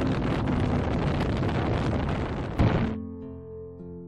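Wind rushing on the microphone over a motorcycle running along the road, cut off abruptly after about three seconds just after a sharp thump; quieter plucked harp-like music then begins.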